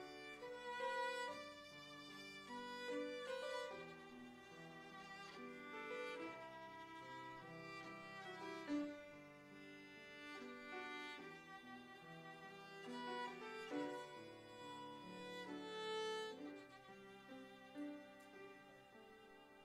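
Solo violin bowed, playing a slow melody of held notes that step from pitch to pitch.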